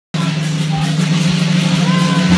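Live rock band playing loudly, overloading a phone's microphone: a steady low droning note under a dense wash of band noise, with voices mixed in.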